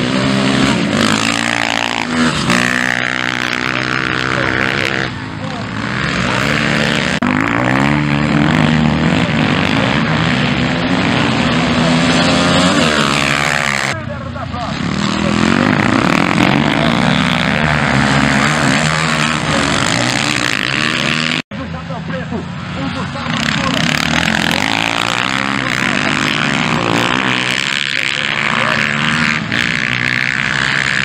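Several dirt-bike engines revving hard, their pitch rising and falling as the bikes accelerate out of corners and change gear, overlapping one another. The sound cuts out for an instant about two-thirds of the way through.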